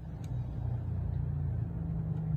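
A low, steady rumble that swells a little in the middle, with a faint light click early on.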